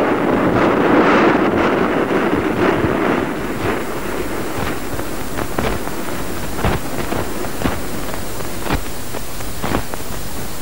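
Sea surf: a wave breaking, a rushing wash of water that eases after about three seconds into a steady hiss with scattered clicks.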